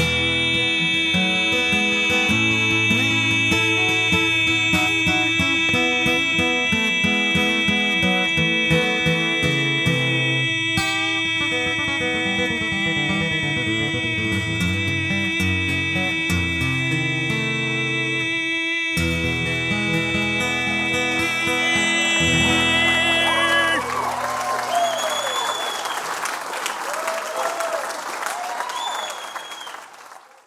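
Solo acoustic guitar played live, finishing the song with an instrumental outro. It stops about 24 seconds in, and the audience applauds and cheers until the sound fades out.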